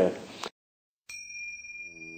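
A moment of dead silence, then about a second in a steady high chime-like ringing tone starts abruptly and holds without fading. A low, even drone joins under it shortly after.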